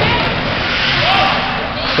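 Indoor ice hockey rink during play: a steady wash of arena noise from skating and the crowd, with a faint distant voice about a second in.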